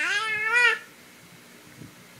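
A baby's high-pitched cry, sliding up in pitch, that stops a little under a second in.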